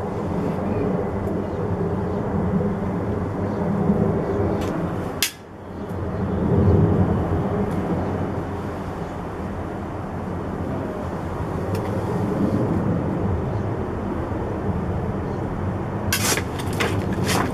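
Steady low outdoor rumble with slow swells, broken by one sharp click about five seconds in.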